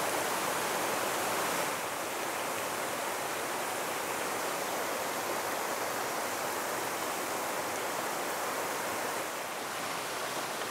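Fast, swollen shallow river rushing over stones: a steady rush of water.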